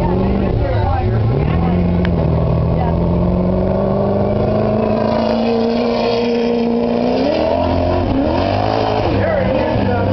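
Dirt-track modified race car engine running hard: the pitch dips about a second in as the driver lifts for a turn, then climbs slowly for several seconds as the car accelerates, rising sharply about seven seconds in and wavering up and down near the end.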